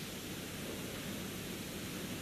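Steady, even hiss of recording background noise.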